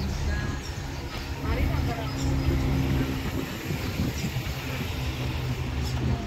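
A motor vehicle engine idling steadily, with faint voices in the background.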